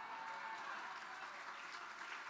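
Audience applauding steadily in response to a joke from the stage.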